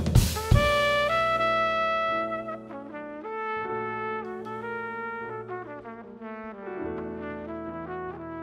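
Live jazz quintet: a crash of drums and cymbals right at the start, then a trumpet playing a melodic line of held notes over double bass and drums.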